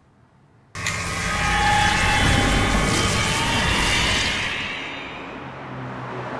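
A loud rushing noise with a low rumble cuts in suddenly about a second in and slowly fades over the last couple of seconds.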